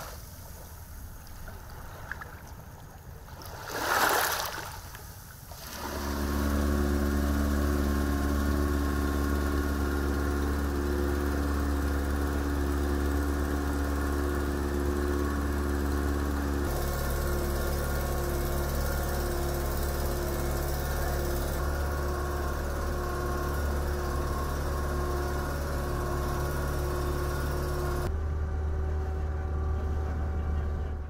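Small waves washing over a stony shoreline, with a brief rush of noise about four seconds in. From about six seconds in, a boat engine drones steadily at an even pitch while the boat is under way.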